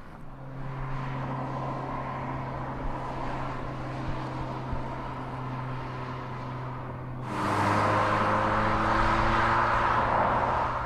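Mazda3 1.6 turbodiesel car running on the move: a steady low engine note over road noise. About seven seconds in, the sound suddenly gets louder, with a broad rush and an engine note that climbs slowly as the revs rise.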